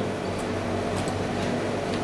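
Steady background hum and hiss of room tone, with a faint tick about a second in.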